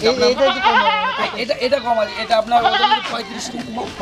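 Goats bleating in a pen, with men's voices talking over them.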